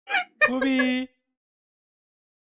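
A short burst of laughter, then a single honking, held vocal note of about half a second at a steady pitch that cuts off abruptly.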